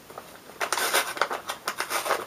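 Taped paper flap of a manila clasp envelope being pulled and torn open by hand: a run of short crinkling, ripping paper noises starting about half a second in.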